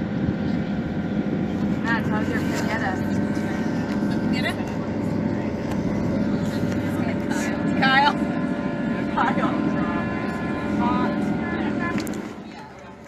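Steady engine drone of a sailing boat motoring with its sails furled, mixed with wind on the microphone and bits of indistinct passenger chatter.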